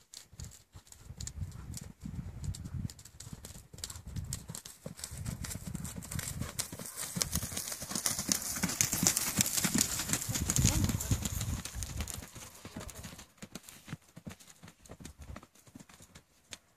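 Tennessee Walking Horse's hooves beating on soft dirt footing under a rider, a quick run of hoofbeats. It grows louder as the horse passes close, loudest about nine to eleven seconds in, then fades away.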